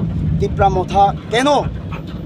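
A man speaking over a steady low hum.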